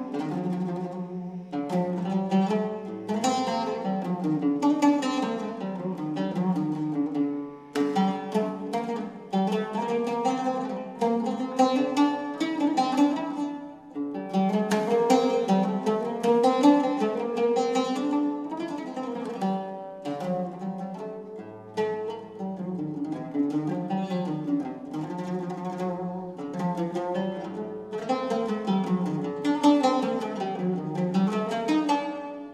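Solo oud played live: a melody of quick plucked notes on the strings, broken by short pauses about eight, fourteen and twenty-one seconds in.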